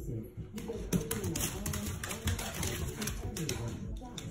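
Scattered light taps and clicks on a hardwood floor, under low, muffled voices.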